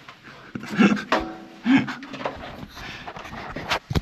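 A person panting and grunting with effort while climbing iron wall rungs, with scuffing and a couple of sharp knocks near the end.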